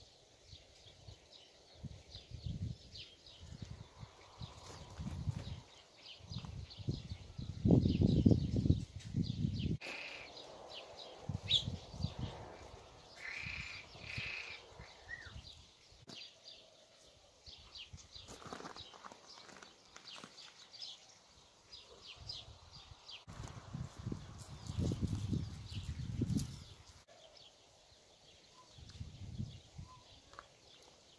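Handling noise of plastic drip-irrigation tubing being fitted along a wire-mesh cage: scattered light clicks and rustles, with irregular bouts of low rumble, the loudest about eight seconds in.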